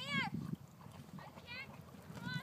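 A young Black Mouth Cur whining as it swims: a high-pitched whimper that rises and falls right at the start, and a shorter one about one and a half seconds in.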